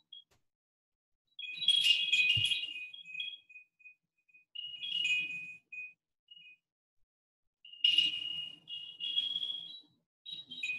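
High-pitched electronic chiming tones in three short bursts, starting about one and a half, five and eight seconds in.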